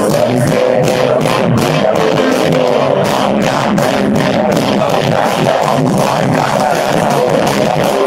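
Rock band playing live: electric guitars and drums with a steady beat, heard loud from within the crowd.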